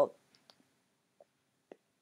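A few faint, scattered clicks, about four in all, from a stylus touching a drawing tablet while writing, after the tail of a spoken "oh" at the very start.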